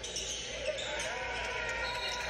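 Basketball being dribbled on a gym's hardwood floor during a game, with a crowd talking in the background.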